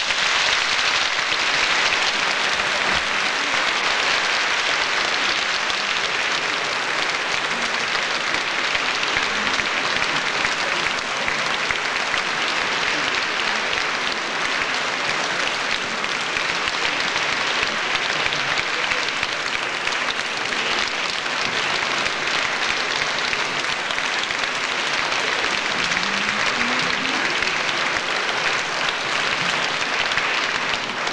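Large concert audience applauding steadily, a sustained ovation following the end of a sung piece.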